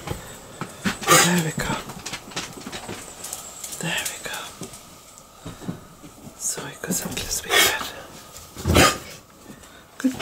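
Handling and movement noise indoors: a handful of separate knocks and rustles a second or two apart, with a brief low murmur about a second in.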